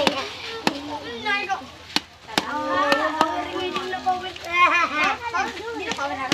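A spatula knocks and scrapes against a large metal wok while a bubbling coconut mixture is stirred, giving sharp knocks at irregular intervals. Children's voices chatter throughout.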